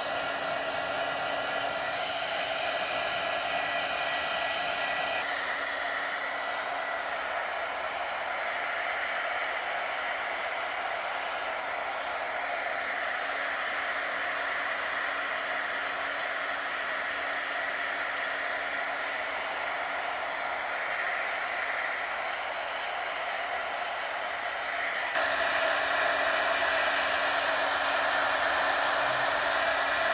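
Handheld electric heat gun running steadily, its fan blowing hot air with a faint motor hum, drying a wet coat of milk paint. It gets louder near the end.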